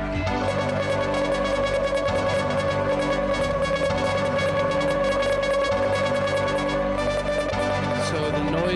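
Live rock band playing with electric guitars and bass: one high, sustained note is held steady throughout over low notes that change underneath.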